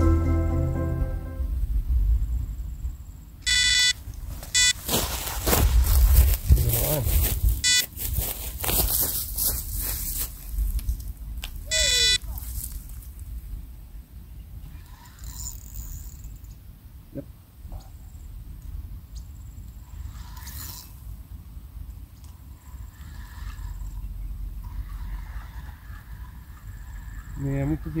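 Electronic carp bite alarm beeping in short rapid bursts as a fish runs with the line: the first burst about three and a half seconds in, the last about twelve seconds in. Loud rustling between the bursts as the rod is taken up.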